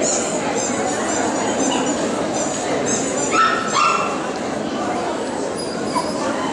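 Poodles yipping with short high-pitched cries over the hum of a crowd in a large hall, with two louder yelps about halfway through.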